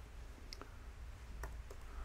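A few faint, separate computer keyboard keystrokes, spaced out rather than in a fast run.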